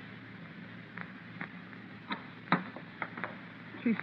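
Radio-drama sound effect of a telephone switchboard being operated to ring a room: a scattering of short, sharp clicks and taps over faint background hiss, the loudest about two and a half seconds in.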